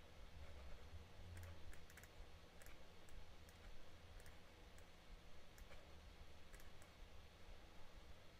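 Faint, irregular clicking from a laptop as it is worked by hand, the clicks coming singly and in small clusters, over a faint steady low hum.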